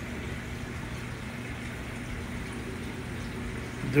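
Steady low hum with an even wash of water noise from a large reef aquarium's circulation pumps and filtration running.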